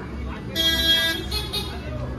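A motor scooter's horn honks twice: a long steady toot, then a short one.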